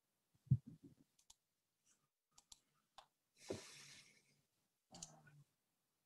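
Faint scattered clicks and a couple of short, soft rustling noises picked up by an open microphone on a video call, over quiet room tone.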